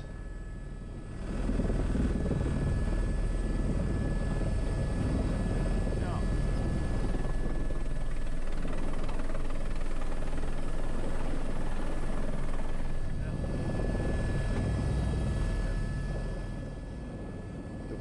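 Airbus H125 helicopter heard from inside the cockpit on approach: steady rotor and turbine noise with a thin, steady high whine. It grows louder about a second in and falls back near the end.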